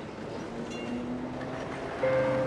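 A passing train: a steady rumble with a brief faint high squeal.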